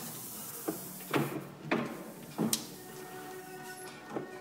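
Hand-lever tabletop platen letterpress being worked: four clunks and knocks from its moving lever, rollers and platen, spread over about two seconds, with faint music in the background.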